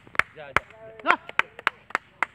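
A rapid, irregular series of sharp clacks, several a second, between short called-out words.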